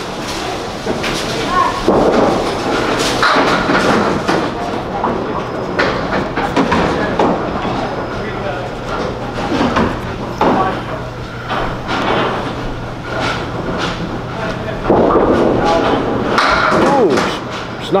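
Candlepin bowling alley din: balls rolling on the lanes and pins knocking down, with several sharp knocks over a steady rumble, and people talking in the background.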